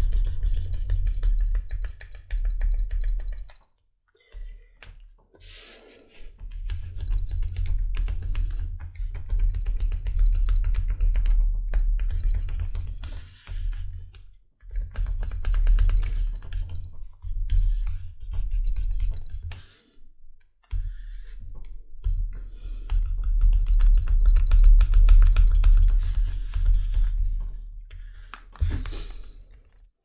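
A hand tool rubbed hard along the edges of soaked, molded leather resting on a granite slab, rounding the edges out. It comes in bouts of rapid scraping strokes a few seconds long, with short pauses between.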